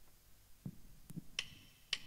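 Faint, sharp ticks about every half second, a count-in before the band starts the next song, after two soft low thumps.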